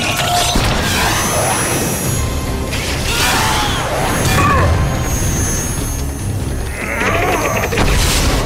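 Cartoon superhero fight soundtrack: dramatic music under booming impacts, crashes and energy-blast effects. There are sharp hits about three seconds in and again near the end.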